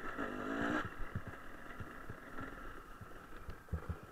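Enduro dirt bike engine running on the throttle while riding over rough ground, strongest in the first second and then settling lower. Short low thumps and knocks from the bumpy track run through it, with two sharp ones near the end.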